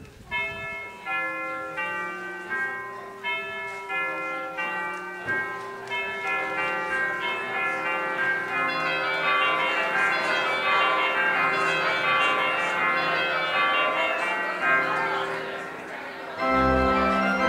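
Church bells ringing a peal: bells of several pitches struck one after another, about two strikes a second at first, then overlapping into a dense, ringing wash.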